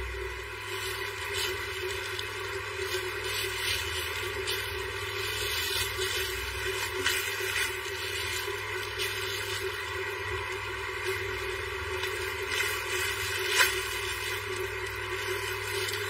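Clear plastic clothing packaging crinkling as it is handled, with scattered short crackles, the sharpest about three-quarters of the way through, over a steady background hum.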